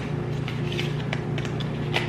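Fingernails picking at a small cardboard product box, a few faint clicks and taps of the flap and card, over a steady low hum.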